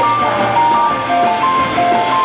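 Indie rock band playing live: a fast melody of short keyboard notes, about four or five a second, over guitar, bass and drums.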